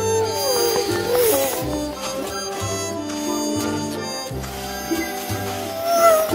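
Background music with held melody notes over a bass line that repeats about every second and a half; in the first second and a half a line slides up and down in pitch.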